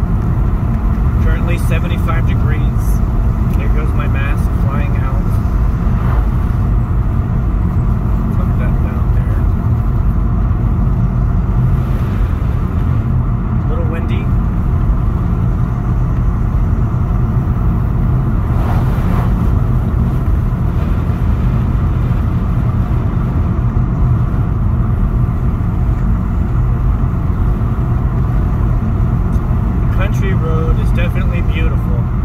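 Steady road noise of a car driving on a rough asphalt back road, heard inside the cabin: a constant low rumble of engine and tyres.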